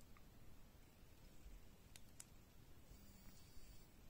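Near silence with a few faint clicks from fingers pressing and handling a smartwatch, two of them close together about two seconds in.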